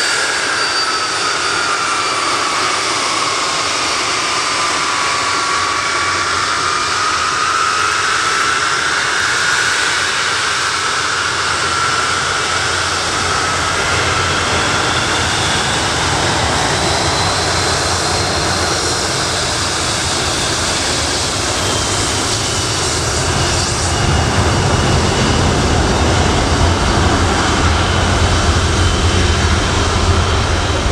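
The four Rolls-Royce Conway turbofans of a Handley Page Victor, running at taxi power. A loud whine sweeps down and back up in pitch as the aircraft passes. In the last several seconds a deeper rumble grows louder as the jet pipes turn toward the listener.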